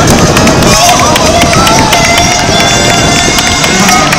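Spectators clapping close by, with a rapid run of sharp claps, over a loud voice and crowd noise.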